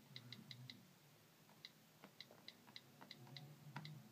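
iPad on-screen keyboard key clicks as a name is typed: faint short ticks, a quick run of about five at the start, a pause of about a second, then about eight more at an uneven pace.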